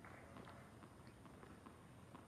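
Near silence: faint tennis-court ambience with a few faint ticks, the muted sound of a rally.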